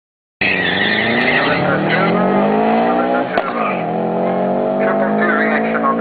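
Car engines at full throttle off the line in a drag race, the revs climbing steadily, dropping sharply at a gear change a little over three seconds in, then climbing again.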